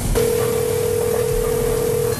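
Telephone ringback tone on an outgoing call: one steady low beep that starts a moment in and holds for about two seconds, over the line's hiss. It means the number being called is ringing and has not yet been answered.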